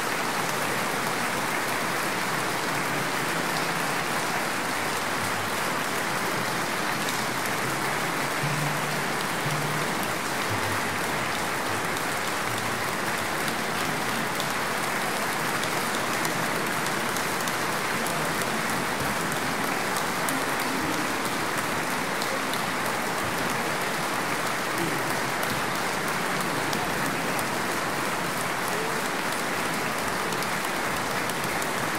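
Concert audience applauding steadily, a dense, even clapping that holds the same level throughout.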